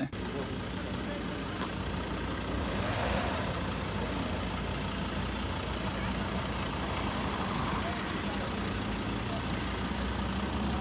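Ford Endeavour's diesel engine idling steadily, a low even hum.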